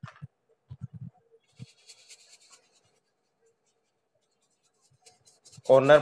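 Paintbrush dabbing and scratching poster colour onto paper: a few soft taps in the first second and a half, then a brief faint scratchy brushing about two seconds in.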